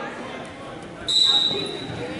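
A referee's whistle, blown once about a second in: a single steady high tone lasting just under a second, stopping the wrestling so the wrestlers separate and reset to neutral.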